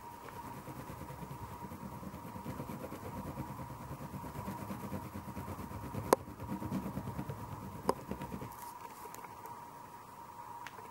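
Oil pastel stick scrubbed rapidly back and forth on paper, a fast rhythmic scratching that stops about eight and a half seconds in. Two sharp clicks stand out in the second half.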